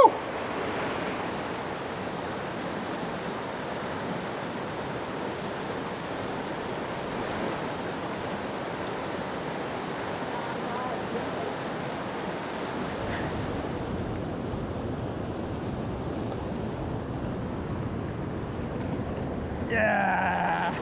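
Steady rush of the river running through rapids and riffles among boulders, with a short whoop right at the start. The sound turns duller about two-thirds of the way through.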